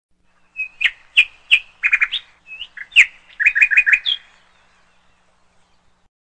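A bird chirping: a run of sharp chirps and quick trills that stops just past four seconds in.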